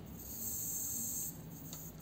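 Faint, steady rustling hiss from the powered two-axis camera gimbal of a V-Copter Wing L100 drone as its motors hold the camera, a sound typical of a cheap gimbal.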